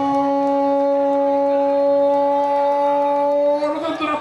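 A man's long, drawn-out goal cry, "Gooool," held on one loud, steady note. It breaks off into speech near the end.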